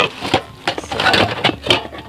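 Handling noise of items in a cardboard box: a rapid series of light knocks and clunks with rustling as ceramic clogs are lifted and shifted among the other things in it.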